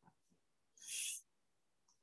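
A person's single short breath into the microphone, a soft hiss about a second in.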